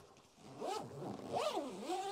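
Zip on the fabric chair-storage bag on a campervan's tailgate being pulled along, starting about half a second in, its buzz rising and falling in pitch as the pull speeds up and slows.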